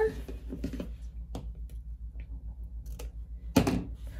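Small sewing scissors cutting through flat elastic: a few light clicks and snips, then one sharper snap near the end. A steady low hum runs underneath.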